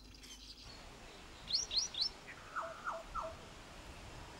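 Faint birdsong: three quick, high rising chirps about a second and a half in, then three lower falling notes, over a low steady background hiss.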